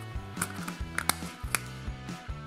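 Small hard-plastic toy parts clicking and tapping as a transforming dinosaur toy is folded by hand and its egg-shell belly halves are swung open: a few sharp clicks over quiet background music.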